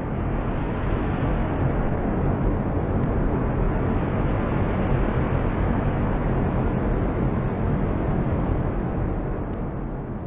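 A steady rushing noise with no beat or tune, like a jet-engine or wind sound effect, opening a 1990s dance album. It swells slightly through the middle and eases off near the end.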